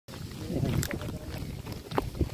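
Wind buffeting the microphone, a steady low rumble, with a few short sharp clicks about a second in and again near the end.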